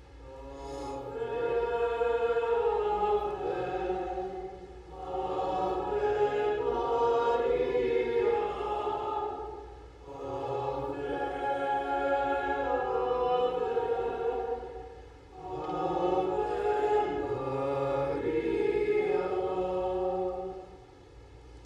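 Choir singing a devotional hymn in four phrases of about five seconds each, with a brief breath between phrases.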